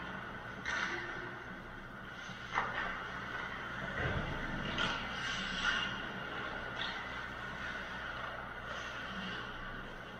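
Ice rink arena ambience: a steady mechanical hum with several short, sharp clacks and scrapes of hockey sticks, puck and skates on the ice from play at the far end of the rink.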